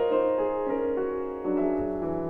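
Solo grand piano playing sustained notes that overlap, with a new chord struck about one and a half seconds in.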